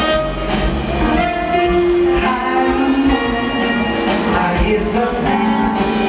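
Live jazz-pop band playing a mid-tempo tune, with drum kit, bass and held melody notes, and some singing over it.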